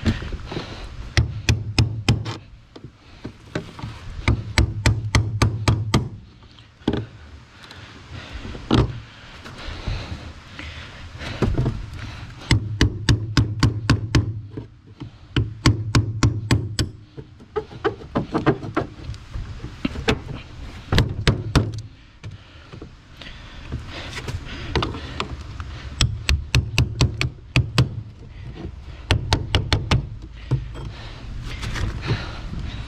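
Hammer driving a chisel through a car's sheet-metal floor pan in runs of rapid strikes, about five a second, with short pauses between runs. The floor is being cut open by hand to reach the fuel pump in the tank below.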